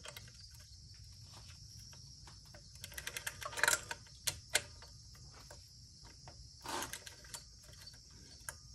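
Quiet metal clicks and knocks of hand tools working the alternator adjusting link bolt while slackening the alternator. They come in a cluster about three to four and a half seconds in, and again around seven seconds. A faint steady high-pitched hiss sits under them throughout.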